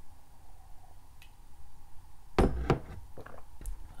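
A few sharp knocks and clicks: a faint click about a second in, then two strong knocks in quick succession about halfway through, followed by two fainter clicks.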